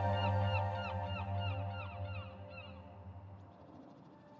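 Gulls calling in a rapid series, about four calls a second, over a steady low drone. The calls fade out about three seconds in and the drone dies away near the end.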